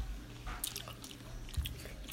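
Quiet room tone with a steady low hum and a few faint, scattered clicks close to the microphone.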